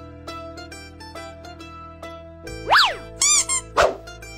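Light comic background music of plucked strings. Cartoon sound effects are laid over it about three-quarters in: a quick whistle sliding up and back down, a few springy boings, then a short sharp swish just before the end.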